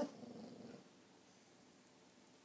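A sleeping border collie gives one short muffled vocal sound at the very start, sudden and trailing off within about a second: dog sleep noises, which the owner takes for a nightmare.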